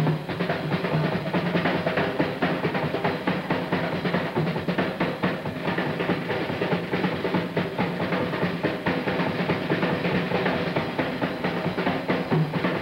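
Jazz drum kit played as a solo: a fast, unbroken run of strokes on snare, tom-toms and bass drum, the drums ringing under the hits.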